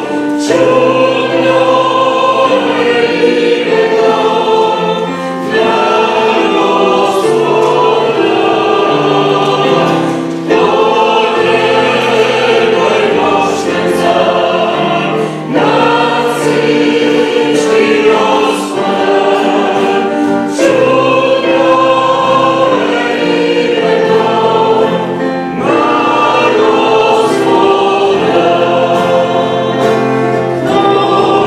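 Several voices singing a church hymn together, accompanied by acoustic guitar and digital piano, in phrases of about five seconds with brief breaks between them.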